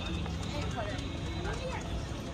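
Passers-by talking in a crowd, with scattered footsteps on stone paving over a steady low background hum.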